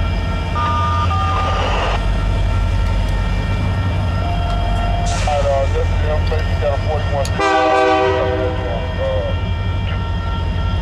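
Freight cars rolling past a grade crossing, a steady low rumble under the continuous ringing of the crossing bell. About seven seconds in, a train horn sounds one chord for about a second and a half.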